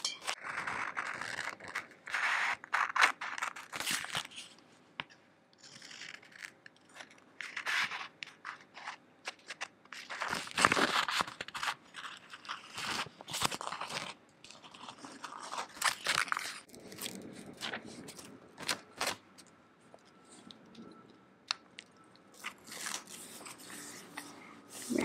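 Close-up paper and sticker handling: rustling and peeling of a paper sticker, small scissors snipping around it partway through, then fingers rubbing it down onto a journal page. The sounds are irregular scrapes and crackles with sharp little clicks.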